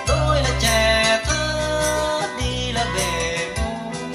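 Vietnamese nhạc vàng ballad played through vintage Dynaco bookshelf speakers as a listening test, heard in the room: a voice over bass notes that change roughly once a second.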